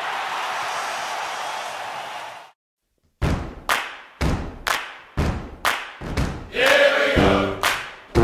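A steady roar of crowd noise cuts off after about two and a half seconds. A beat of heavy thumps follows, about two a second, like a bass drum. A shout and the first brass notes of a jazz-band song come in near the end.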